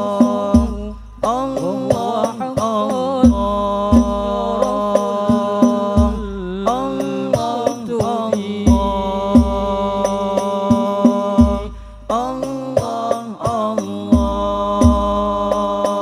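Al-Banjari sholawat music: a lead singer's melismatic voice over held steady tones, accompanied by terbang frame drums with a deep bass stroke repeating about once a second. The music breaks off briefly about a second in and again about twelve seconds in.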